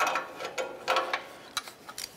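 A 3/8-inch drive ratchet clicks in a few short bursts as its handle is swung back between strokes. It is turning an O2 sensor socket to snug a new oxygen sensor fully into the exhaust pipe.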